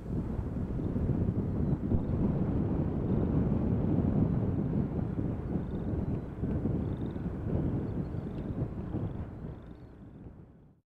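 Wind buffeting the microphone in an open field: a gusty, low rumble that fades out near the end.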